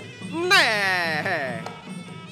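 A loud drawn-out vocal exclamation, a man's cry that starts high and slides down in pitch over about a second, heard over steady background music.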